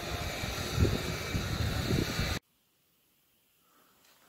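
Outdoor ambience: a steady hiss with irregular low rumbles. It cuts off abruptly about two and a half seconds in, leaving near silence.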